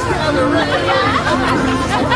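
Several people chatting at once, with music playing underneath.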